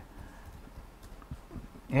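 A quiet pause in a room with a few faint, scattered low knocks, before speech resumes at the very end.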